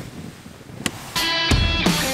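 Intro music starting about a second in: a guitar-led rock track that kicks in with drums, after a quiet moment.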